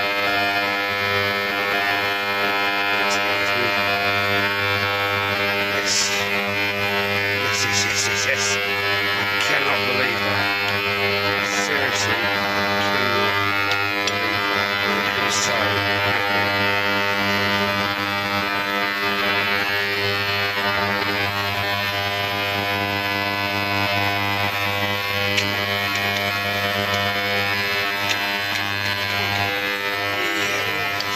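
A steady electrical hum with many overtones, and a few light metal clicks and clinks in the middle as a socket bar and gloved hand work a rusted nut on a scrap motorcycle exhaust.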